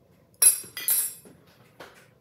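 Metal spoon clinking twice against a small glass cup of jam, each clink ringing briefly, then a fainter tap near the end.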